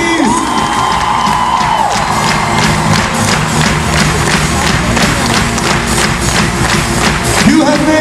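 Live rock band playing in a large hall, with a long held note at the start, then a steady beat of about two to three strokes a second. The crowd cheers and claps along.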